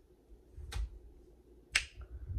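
Two sharp finger snaps, about a second apart.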